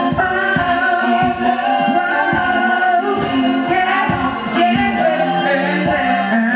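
Live performance of a song in a club: several voices singing over accompaniment with a steady bass-drum beat about every 0.6 seconds.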